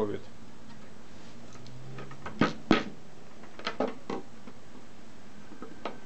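Several short, sharp clicks and knocks from the plastic housing and cord of a partly dismantled angle grinder being handled and set down, over a steady hiss.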